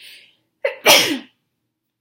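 A woman draws a quick breath, then sneezes once, loudly.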